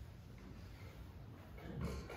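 Faint steady low hum of a quiet room, with one short, louder low-pitched sound near the end.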